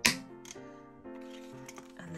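Background music playing steadily, with one sharp metallic click at the start as the planner's metal binder rings snap, and a lighter tick about half a second in.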